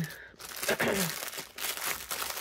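A throat clear, then crinkling of a clear plastic packaging bag as it is picked up and handled.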